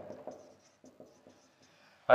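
Faint strokes of a marker pen writing a short word on a whiteboard, a few brief scratches in the first second.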